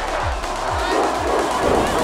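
Club dance music with a kick drum beating about twice a second, and a crowd shouting over it.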